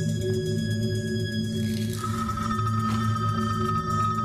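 Background score of long held tones over a low drone, with a higher held note coming in about two seconds in.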